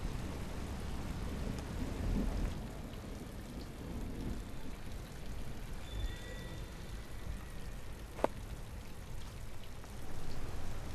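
Steady rain falling, an even patter over a low rumble, with one sharp tap a little after eight seconds in.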